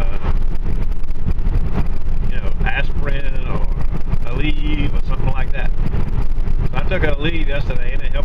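Steady low rumble of a car's engine and tyres on the road, heard from inside the cabin while driving, with a voice speaking at times over it.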